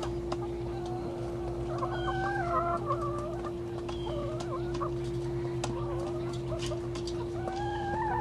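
A flock of hens clucking in low, wavering calls, in a few short bouts. A steady hum runs underneath.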